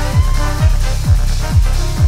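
A techno-jazz big band playing live: a four-on-the-floor kick drum, about two hits a second with each hit dropping in pitch, under sustained chords from the saxophones and brass.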